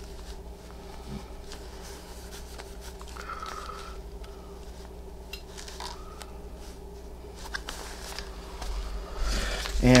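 Quiet room with a steady low electrical hum, and faint soft rustles of fabric applique pieces being handled and pressed into place on the background fabric.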